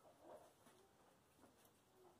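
Near silence: room tone with a few faint, brief soft rustles.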